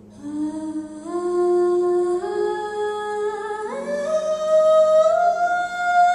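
A female jazz singer's voice climbs step by step through a slow phrase to a long held high note, with a sustained piano note underneath that fades out partway through.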